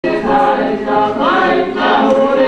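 A group of voices singing a song together in harmony, with long held notes.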